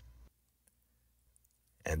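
Near silence in a pause of a man's narration, with one faint click; his voice trails off at the start and comes back near the end.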